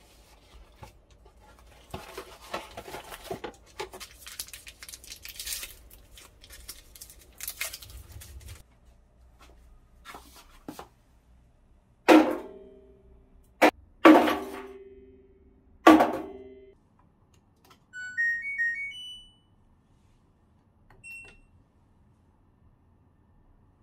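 Cardboard box of dishwasher detergent tablets being opened and handled, crackling and tearing, then three loud thunks about two seconds apart as the tablets are dropped one at a time into a front-loading washing machine's steel drum. Near the end the washer plays a short rising electronic power-on tune, followed a moment later by a single beep.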